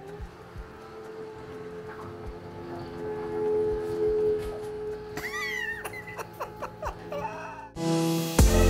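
Electric stairlift running, a steady motor hum of a few held tones as it carries a seated rider along the staircase. About five seconds in there is a short, wavering, high voice-like squeal.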